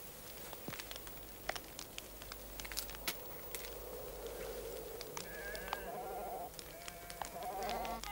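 Sheep bleating faintly, a few short quavering calls in the second half, over quiet scattered clicks and rustling.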